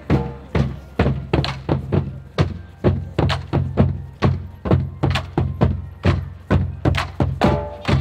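Marching band drumline playing a cadence without the horns: a steady beat of drum strokes, about two to three a second, carried by deep bass drums.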